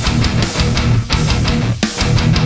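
Solar X1.6 Ola electric guitar with an Evertune bridge, played through a high-gain distorted tone: a heavy metal riff of rapid picked notes.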